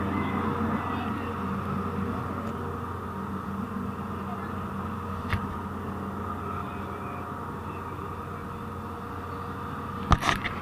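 Steady low drone of a ferry's engines and machinery heard from inside the passenger cabin during a sea crossing, with a single click about five seconds in.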